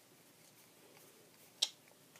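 Bicycle Majestic playing cards being spread and pushed from hand to hand. A single sharp card snap sounds about one and a half seconds in; otherwise the handling is faint.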